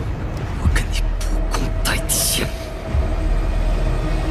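Cinematic sound effects over trailer music for a magic power-up. A deep steady rumble runs under several quick swishes, with a bright hissing burst about two seconds in and a held tone in the second half.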